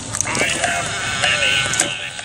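Animated skeleton candy-bowl Halloween prop, triggered, playing a recorded spooky voice with a wavering, trembling pitch through its speaker. The sound starts about a third of a second in and runs to near the end.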